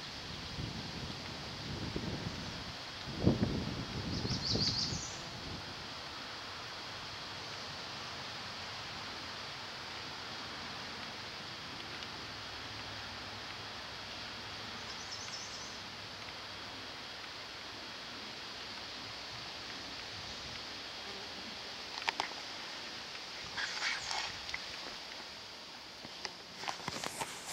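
Outdoor ambience, a steady hiss with brief high bird chirps about four seconds in and again around fifteen seconds. A few low bumps come a few seconds in, and a couple of sharp clicks near the end.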